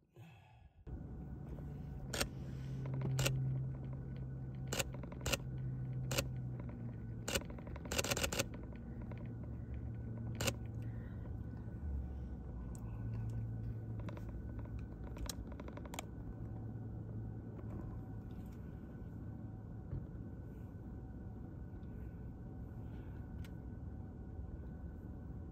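Outdoor ambience: a steady low hum, broken by a string of sharp clicks during the first ten seconds, with a short cluster of them about eight seconds in.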